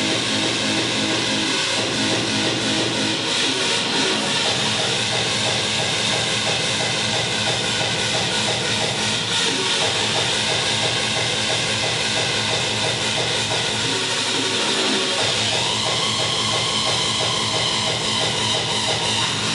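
Loud drum and bass music from a DJ mix played over a club sound system, dense and continuous; a new held tone comes into the mix near the end.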